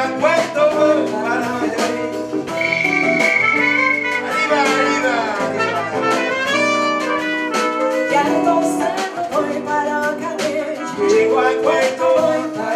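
Live jazz-blues band playing: trumpet, blues harmonica, electric bass and keyboard, with a woman singing at times. A long high note is held about three seconds in, followed by sliding runs of notes.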